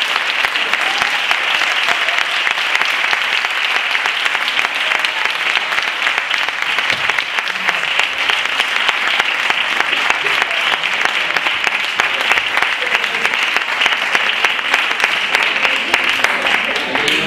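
Audience applauding: dense, unbroken clapping that holds steady throughout.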